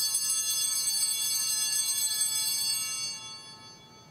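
Altar bells ringing at the elevation of the consecrated host, a bright, high, many-toned ringing that holds for about three seconds and then fades away.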